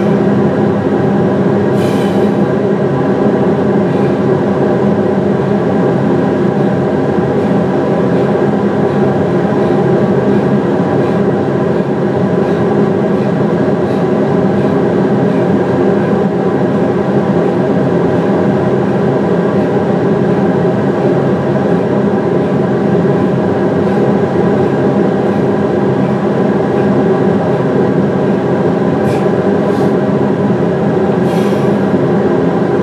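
Recording of two industrial fans played back as white noise: a loud, steady whirring with several even hum tones running through it, unchanging throughout.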